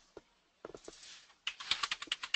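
Computer keyboard typing: a few scattered key clicks, then a quick run of keystrokes in the second half.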